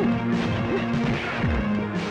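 Dubbed film-fight punch and hit sound effects, a few sharp whacks and a low thud, landing over a continuous dramatic background music score.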